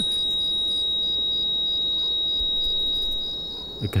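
A steady high-pitched pure tone, the film sound effect of ears ringing after a gunshot, fading out over the last second.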